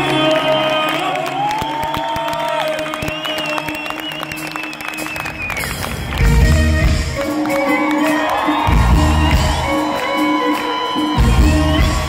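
Live Persian pop band with a lead violin playing an instrumental passage. The violin plays sliding phrases over audience cheering and clapping, and from about six seconds in the band lands three heavy low accents a couple of seconds apart.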